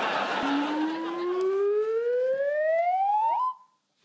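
Audience laughter dies away while a single siren-like tone rises smoothly and steadily for about three seconds, flicks up sharply at the top, and cuts off suddenly.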